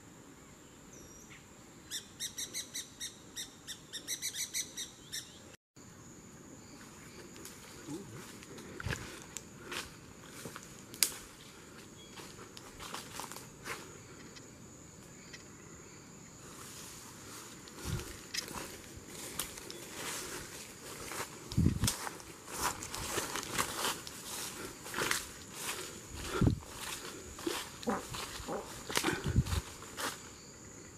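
A parakeet gives a quick series of about a dozen calls, about four a second, over a steady high drone of insects. After that come footsteps and the crackle of leaves and twigs as someone walks through forest undergrowth, growing busier in the second half.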